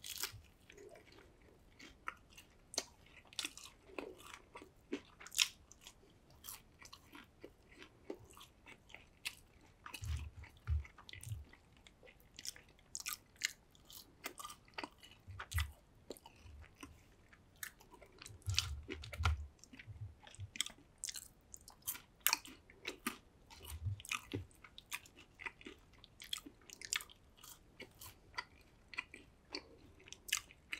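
Close-miked chewing and biting of French fries, with many sharp wet mouth clicks and crunches at an irregular pace. A few short low thumps come about ten, fifteen, nineteen and twenty-four seconds in.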